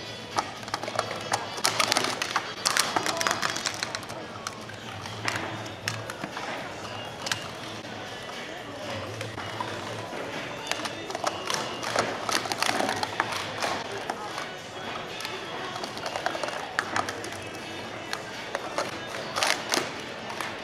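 Plastic sport-stacking cups clicking and clattering against each other and the mat in quick runs of taps, over background music and voices.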